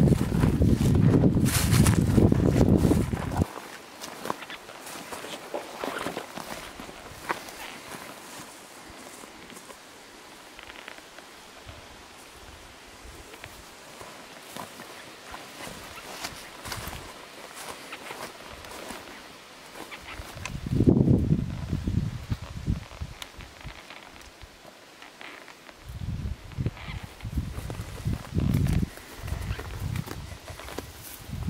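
Footsteps through dry grass and sagebrush, then small clicks and rustles as a trail camera mounted on a stump is handled. Loud low rumbling at the start, again about two-thirds through and near the end, are the loudest sounds.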